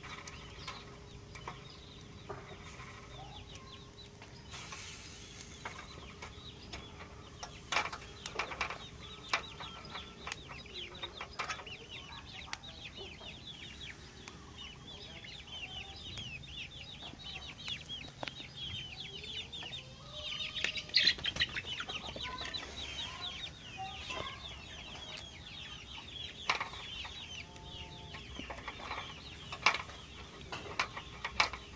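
Chickens clucking, with many quick, high, falling chirps through most of the stretch, busiest and loudest about two-thirds of the way through. A few sharp clicks are heard as well.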